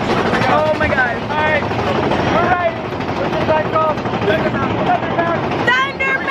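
Riders on a mine-train roller coaster yelling and whooping in short, rising-and-falling cries over the steady rumble and wind rush of the moving ride, the cries getting louder near the end.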